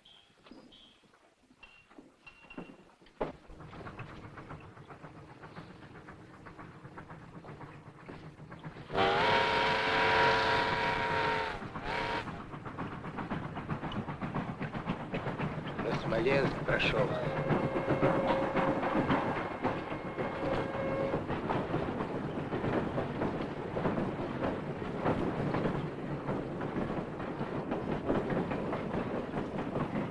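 Steam locomotive whistle blowing for about three seconds, then a heavy train rolling past with a rumble and the clatter of wheels on rail joints, and a second, thinner whistle tone held for a few seconds midway. The rumble comes in about three seconds in and keeps building.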